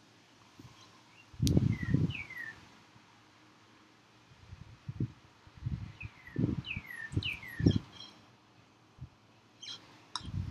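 A Sharpie marker and hand rubbing and knocking on paper while a line is drawn, in uneven low bursts. Over it, two runs of short falling chirps, a bird in the background.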